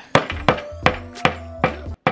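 Claw hammer striking a dig-kit dinosaur egg on a metal baking sheet: about five quick, evenly spaced blows. Music plays underneath.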